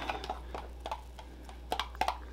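A few light clicks and taps of a plastic beaker and stirring rod being handled, the loudest pair near the end.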